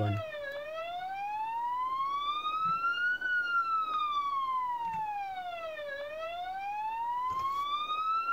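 Toy police car's electronic siren sounding a slow wail: a single thin tone that rises for nearly three seconds and falls for nearly three, over and over, with a few faint clicks of handling.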